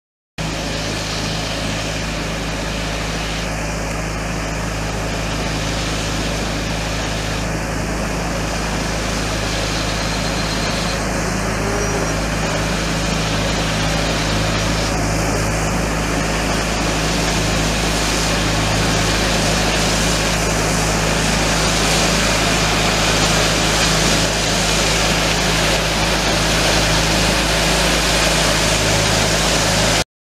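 Steady truck engine running with a broad hiss over it, getting a little louder in the second half.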